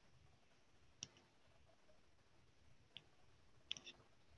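Near silence with a few faint, sharp clicks: one about a second in, one near three seconds, and a quick cluster of three or four near the end.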